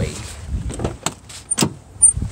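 Driver's door of a 2006 Mercury Grand Marquis being opened: the latch releases with sharp clicks, one about a second in and a louder one near the end.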